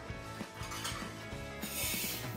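Background music with steady held tones and light, regular clicking percussion; a brief burst of hiss near the end.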